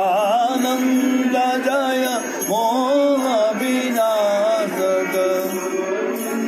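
Devotional bhajan singing: one voice carrying a wavering, ornamented melody over a steady held accompaniment, with light jingling percussion keeping time.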